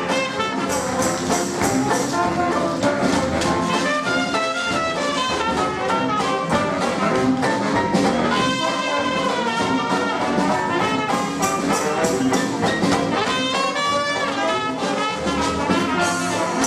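Traditional jazz band playing a second-line number: cornet and trombone lead over banjo, piano, string bass and drums keeping a steady beat.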